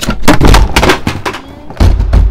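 A Boeing 737-800 over-wing emergency exit being opened: a clatter of knocks as the handle is pulled down and the plastic handle cover falls out, then a heavy thump near the end as the door slams open.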